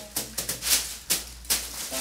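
Exam-table paper crinkling and crackling in irregular bursts under a baby's hands as she grabs and crawls on it.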